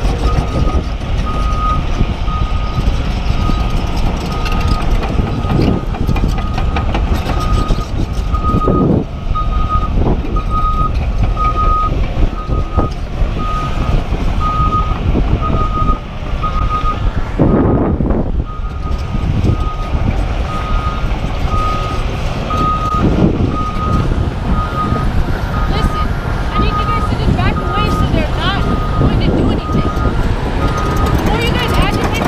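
Backup alarm of heavy construction equipment beeping: one steady tone repeated in even pulses, over a low engine rumble.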